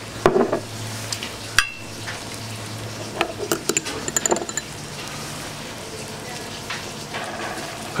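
A metal spoon stirring and scraping in a small ceramic bowl as a salad is tossed, with scattered light clinks: one sharper ringing clink about a second and a half in, and a quick run of clinks around the middle. A steady low hum runs underneath.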